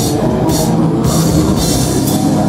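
Heavy metal band playing live and loud: a drum kit with repeated cymbal crashes about every half second over a dense wall of band sound.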